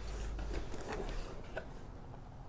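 Cardboard box lid being lifted open, with light scrapes and soft taps of cardboard, most of them about a second in.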